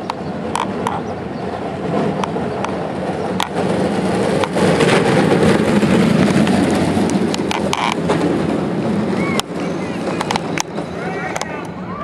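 Two soap box derby cars' hard wheels rolling on asphalt: a rolling rumble with scattered clicks that swells as the cars pass, loudest about five to seven seconds in, then eases off. Spectators' voices can be heard around it.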